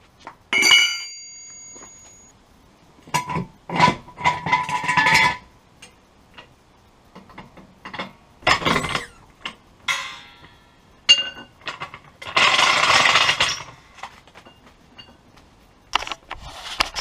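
A steel wheel brace dropped on the ground with a sharp, ringing clank, followed by a series of metal clanks, knocks and scrapes as the car jack is worked down and dragged out from under the car.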